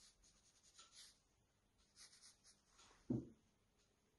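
Faint, short scratchy strokes of a paintbrush on textured watercolour paper, with one dull thump about three seconds in.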